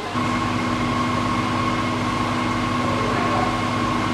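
Steady mechanical hum from a motor or engine running, with several constant tones over a low rumble. It comes in abruptly just after the start.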